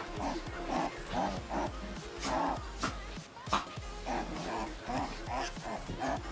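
A puppy giving a string of short yips, roughly two a second with a brief pause midway, over background music.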